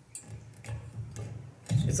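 Microphone handling noise as a handheld microphone is fitted back into its clip on a stand: a few light clicks and bumps over about a second and a half.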